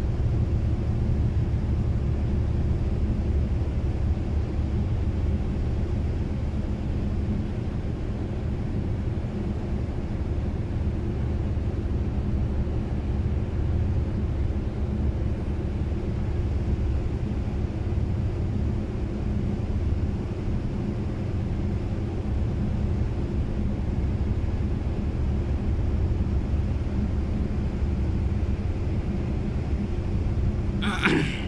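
A steady low rumble of large ships' diesel engines, with a deep, even hum.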